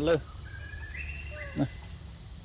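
Baby macaque giving a thin high call that steps up in pitch and holds, then a short falling call about three-quarters of the way through, over a steady insect drone.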